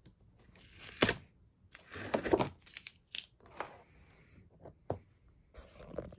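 Blue painter's tape being peeled off a plastic cutting mat, in short tearing, crinkling pulls. A sharp knock about a second in is the loudest sound, with smaller clicks later.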